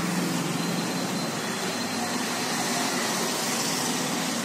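Steady rushing background noise with a low hum underneath, unbroken throughout.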